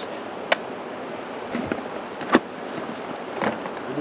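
Plastic golf discs being handled and swapped in and out of a disc golf bag: a few short, soft clicks and knocks, the sharpest about two seconds in, over a steady outdoor background hiss.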